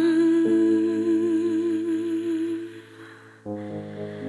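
Background song: a voice holds one long, slightly wavering note over sustained chords, fading out about three seconds in. The chords beneath change twice.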